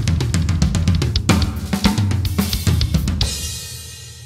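Fast, dense drumming on a full drum kit, with snare, bass drums and cymbals hit in quick succession. It stops abruptly about three seconds in, leaving a cymbal ringing and fading out.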